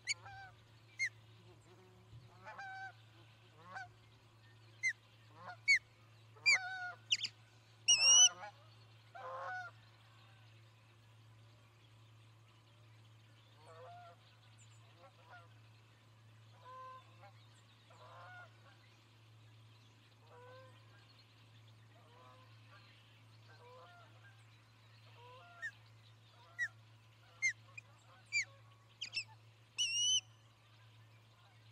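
Wild birds calling outdoors. Sharp, short high calls come thick and loud over the first ten seconds, peaking about eight seconds in. Softer, lower calls repeat every second or so through the middle, and sharp high calls return near the end. A steady low electrical hum runs underneath.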